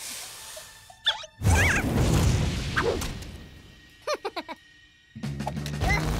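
Cartoon soundtrack of music and sound effects. A loud crash-like burst comes about a second and a half in, with squeaky, gliding chirps from the cartoon slugs. A quick run of four or five short squeaks follows near four seconds, and music comes back in just before the end.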